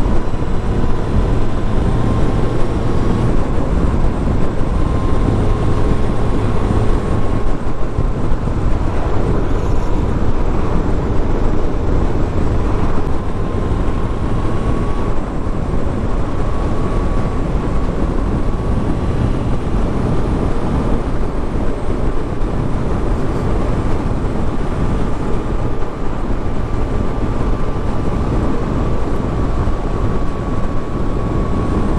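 A 1999 Suzuki Hayabusa's inline-four engine running at a steady cruise under heavy wind rush on the microphone. A thin steady whine runs through it.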